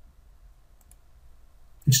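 A couple of faint computer mouse clicks a little under a second in, over a low steady hum; the narrator's voice comes in near the end.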